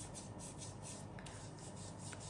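Hands rubbing sunscreen into bare forearms: a faint, rhythmic swishing of skin on skin, about four or five strokes a second.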